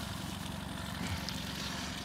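Boat's outboard motor running steadily at trolling speed, with a low, even hum.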